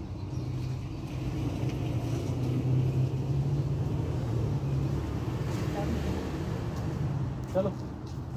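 A motor vehicle engine running, a steady low hum that grows louder over the first three seconds and eases and shifts lower after about five seconds. A man says a word near the end.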